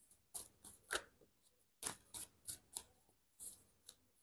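Deck of tarot cards being shuffled by hand: a faint, irregular series of short card snaps and swishes, about nine in four seconds.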